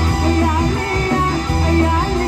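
A live band playing Sasak pop music on electric guitars, bass and drum kit, with a woman singing the melody through a microphone.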